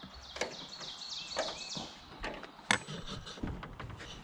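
Scattered metal clicks and knocks of bungee-cord hooks and gate hardware being worked loose on a wooden-post, wire-mesh fence gate, with one sharp knock a little under three seconds in.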